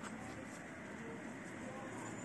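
Quiet room tone: a faint, steady hiss with no distinct sounds.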